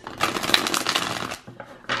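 A deck of tarot cards being riffle-shuffled: a quick run of rapid card flicks lasting a little over a second, starting just after the beginning, then dying away.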